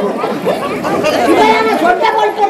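Speech only: voices talking over one another.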